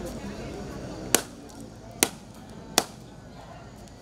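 Three sharp whacks a little under a second apart, starting about a second in, as a hand-held stick or blade is struck down, over a low murmur of voices.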